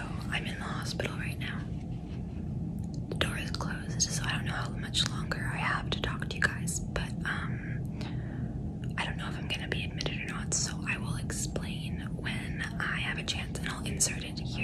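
A woman whispering close to the microphone, in runs of words with short pauses, over a steady low hum.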